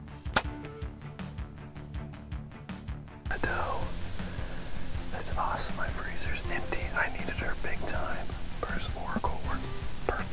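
Background music for about three seconds, then a man whispering in a hunting blind.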